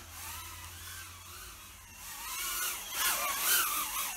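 Happymodel Mobula 8 micro FPV drone in flight, its small brushless motors and propellers whining and wavering in pitch with the throttle, rising higher and louder about three seconds in.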